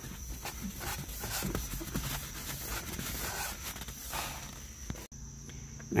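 Cloth wiping glass cleaner across the inside of a car windshield: a run of irregular rubbing strokes that cuts off suddenly about five seconds in.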